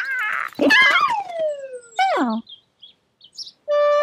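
Cartoon bird characters calling back and forth: one long call that slides down in pitch, then a short call that rises and falls. After a pause of about a second, music starts on a held note near the end.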